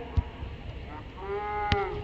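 A dull thump of a soccer ball being struck, then a drawn-out shout on one held vowel lasting under a second, with a sharp click near its end.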